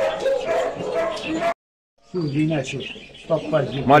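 Dog barking mixed with men's voices; about a second and a half in, all sound drops out for half a second, then the voices come back.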